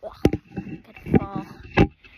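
A girl's voice in short, broken fragments, with two sharp knocks, one just after the start and one near the end.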